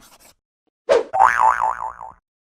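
Cartoon 'boing' sound effect starting about a second in, with a sudden twang whose pitch wobbles up and down about five times a second. Just before it, at the very start, there is faint scratching like a marker drawing on paper.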